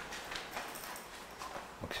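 Faint rustling and a few light taps of paper sheets being handled on a desk.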